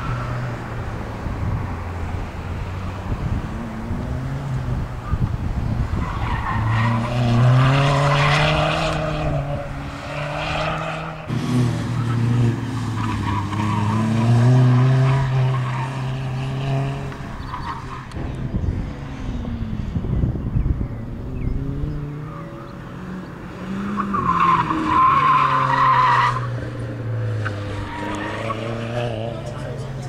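Volkswagen Golf Mk4 engine revving up and down again and again as the car is driven hard through an autocross course, with tires squealing in the turns. The squeal is loudest about three quarters of the way through.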